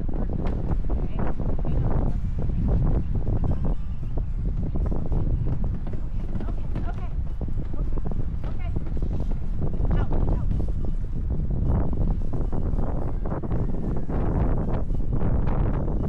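Wind buffeting the microphone, with scattered knocks and rattles from a plastic pet crate being handled and carried.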